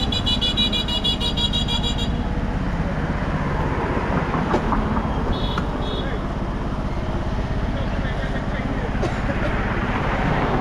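A vehicle engine idling with a steady low rumble, with road traffic around it. A rapid high beeping sounds in the first two seconds, and two short high beeps come about five and a half seconds in.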